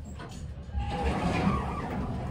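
Elevator car arriving and its doors sliding open about a second in, over a steady low hum.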